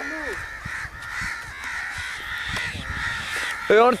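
Open-field background with a steady high hiss. Near the end a man's loud, repeated shouting of "come on" begins, urging the hawk on.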